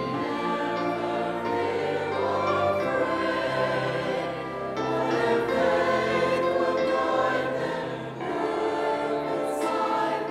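Mixed church choir singing an anthem in several parts, accompanied by piano and a small ensemble of strings and woodwinds, with sustained bass notes under the voices.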